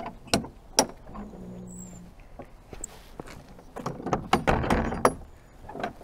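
Iron latch on an old wooden gate clicking as it is worked, followed by knocks and rattles as the gate is opened and shut, busiest about four to five seconds in.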